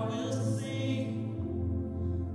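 A man singing a slow worship song into a microphone, holding long notes over sustained instrumental backing; the low bass note changes partway through.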